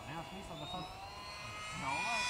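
RC flying-wing model's motor and propeller whining as the plane flies past low, the whine rising in pitch and getting louder near the end as it approaches.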